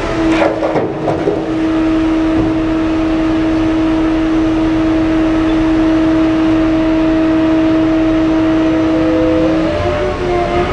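Large open-pit mining haul truck running with a steady whine over engine noise as it lowers its dump bed and pulls away; the pitch rises near the end as it picks up speed.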